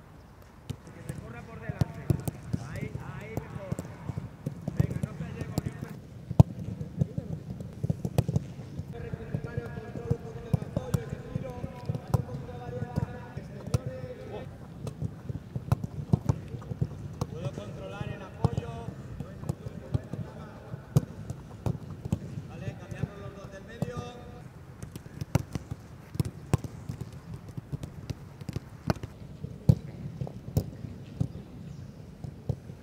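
Footballs being kicked and passed repeatedly in a training drill: a run of sharp, irregular thuds of boot on ball. Players' voices call out at intervals.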